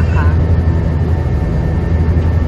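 Steady low drone of an airliner in flight, heard inside the passenger cabin.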